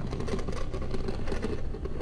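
Steady low ambient drone with a dense, rough, crackling scratch-like texture over it, the horror soundtrack bed under the story of a cat clawing at a bedroom door.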